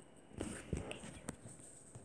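A quiet room with a few faint, short taps and knocks of handling, about three of them spread through two seconds.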